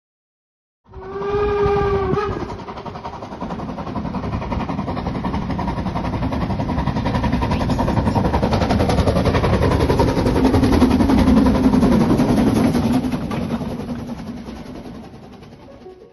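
Steam locomotive whistle sounding once for about a second, then the locomotive working past with rapid exhaust beats and running noise, growing louder to a peak and fading away near the end.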